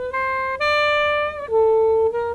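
Synthesized harmonic (sinusoidal) part of a short saxophone phrase, resynthesized by a harmonics-plus-residual model with the residual removed, so the notes sound clean, without breath noise. A few held notes: the pitch steps up about half a second in and drops about a second and a half in.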